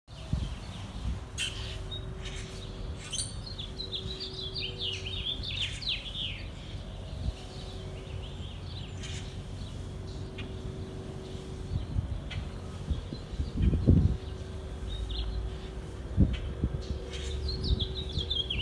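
Small birds chirping in quick runs of short high notes, busiest in the first half, over a low rumble and a faint steady hum. A low thump comes about three-quarters of the way through.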